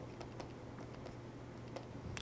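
Faint light taps and clicks of a stylus pen on a tablet as short strokes are drawn, a few irregular ticks over a low steady hum.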